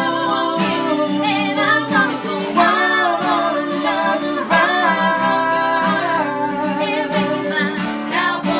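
Live acoustic country song: a woman singing with long held notes over two strummed acoustic guitars.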